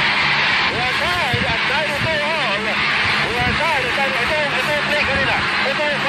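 Dense arena crowd noise from a packed basketball crowd during a crucial free throw, a steady din of cheering with individual voices shouting and calling out above it. It is a little louder in the first second and then holds steady.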